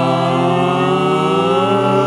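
Six-voice a cappella vocal ensemble holding a sustained chord, with some voices sliding in pitch from about halfway through.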